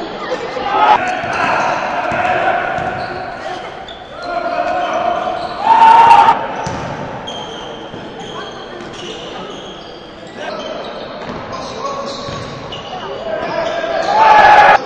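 Basketball being played on a gym court: the ball bouncing, brief high squeaks, and players calling out. There are two loud sounds, one about six seconds in and one at the very end.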